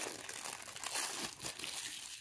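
Clear plastic wrapper crinkling continuously as hands peel it off a deck of trading cards.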